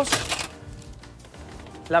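A metal baking tray scraping briefly along the oven's rails as it is slid out, in the first half second, over steady background music.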